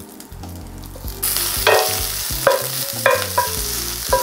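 Raw sweet Italian sausage sizzling in a very hot cast-iron skillet as it is broken up. The hiss starts suddenly about a second in, with a few short clicks over it.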